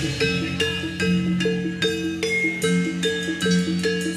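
Javanese gamelan music accompanying a jathilan dance: struck metal keys play a steady, repeating pattern of ringing notes over a sustained low tone.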